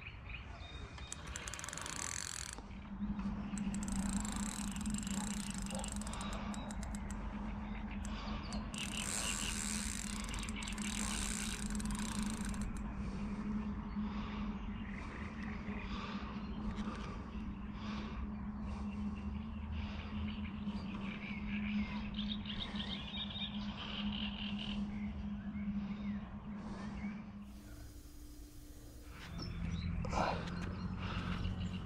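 Fishing reel winding and clicking as a hooked carp is played in on the rod, with a steady low hum under most of it.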